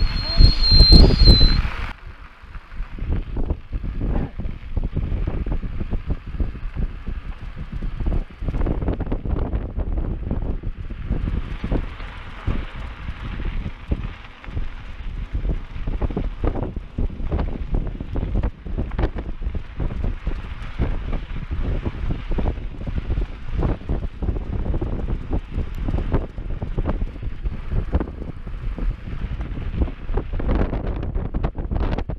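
A high-pitched return whistle held steady for about a second and a half at the start, the recall signal calling the dog back. Then a mountain bike rolls down a bumpy dirt trail, with wind buffeting the microphone and frequent knocks and rattles.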